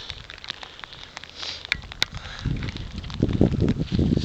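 Rain crackling on the camera's microphone as scattered sharp ticks, with wind buffeting the microphone in a low rumbling gust from about two and a half seconds in.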